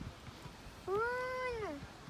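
A young child's voice making one long, drawn-out call of just under a second, arching up in pitch and then sliding down at the end, much like a meow.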